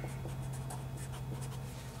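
Blue marker writing on paper, a run of short strokes as a short expression is written out. A steady low hum runs underneath.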